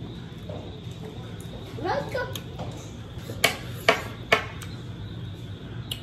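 Three sharp clicks, evenly spaced about half a second apart, over a steady low hum.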